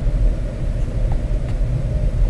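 Steady low rumble with a faint hum and no speech.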